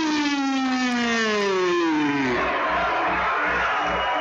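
A ring announcer's long, drawn-out call of a fighter's name, held and falling slowly in pitch until it ends a little over two seconds in, over crowd cheering. After it, music with a steady beat carries on under the crowd.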